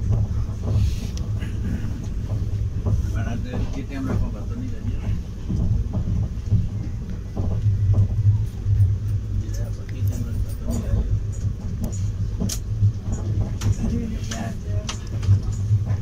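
Passenger train moving slowly past a train on the next track: a steady low rumble with scattered sharp clicks and knocks, more frequent in the second half, and faint voices under it.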